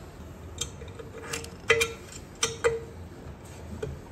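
About five sharp clicks and taps from handling a thin flexible build sheet and small tools on a 3D printer's metal heat bed. Two of the taps are followed by a brief ringing tone.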